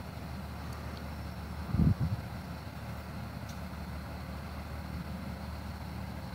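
Steady low rumble of the idling diesel engines of parked fire apparatus, with one low thump a little under two seconds in.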